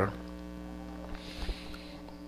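Steady electrical mains hum, a low buzz with a row of evenly spaced overtones, with a couple of faint clicks about a second and a half in.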